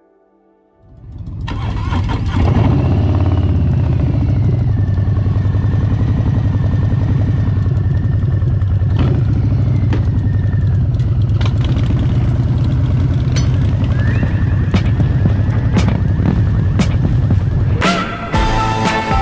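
Harley-Davidson V-twin motorcycle engine running, coming in about a second in and holding a steady low rumble, with a brief rev about three seconds in.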